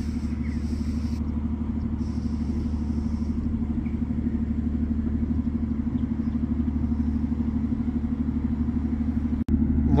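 A ship's diesel engine running steadily: a low hum with a fast, even throb. It cuts out for an instant near the end.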